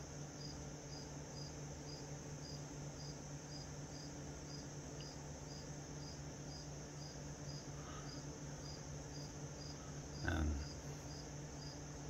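A cricket chirping steadily, about two chirps a second, over the low steady hum of a fan. A brief voice sound comes about ten seconds in.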